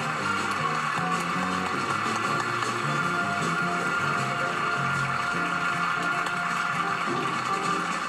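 Talk-show house band playing with studio audience applause over it, from an old television broadcast.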